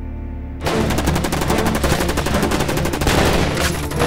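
Sustained rapid automatic gunfire from several rifles at once, breaking out suddenly about two-thirds of a second in over a low drone.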